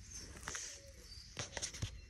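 Faint rustle of dry grass and loose soil being scraped up and tossed by hand while weeding a freshly dug plot, with a few small clicks of clods and pebbles landing about one and a half seconds in.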